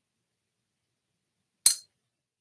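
A single sharp clink near the end, with a brief high ring: a paintbrush knocking against something hard.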